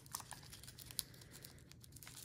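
Tissue paper crinkling faintly as a small wrapped item is handled and unwrapped, with light scattered rustles and one sharper crinkle about halfway through.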